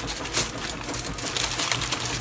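Aluminium foil crinkling and crackling as hands fold and crimp it into a packet, a dense run of small irregular crackles.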